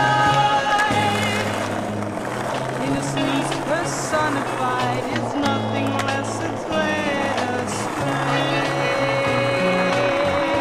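A music soundtrack with a steady bass line plays over skateboard sounds: wheels rolling on smooth pavement and a few sharp clacks of the board.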